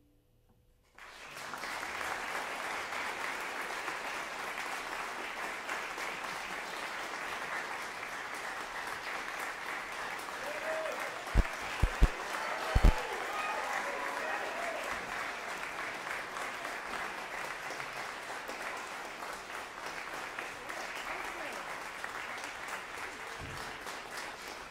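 Concert audience applauding, starting about a second in after a brief silence and running on steadily. A few loud thumps come about halfway through.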